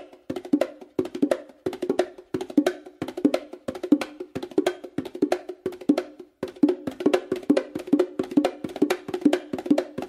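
Meinl bongos played with bare hands in a quick, steady run of strokes: a repeating five-stroke combination of a palm base stroke and a palm-finger movement on the hembra, an open tone on the hembra, and a closed slap with the left hand on the macho. The strokes ring briefly at the drums' pitch, with a short gap about six seconds in.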